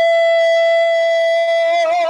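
A man's singing voice holding one long high note of a Broadway show tune, steady in pitch, with a slight waver near the end.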